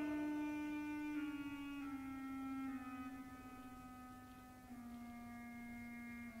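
A quiet solo melodic line from the opera orchestra: about five slow held notes stepping downward, growing softer.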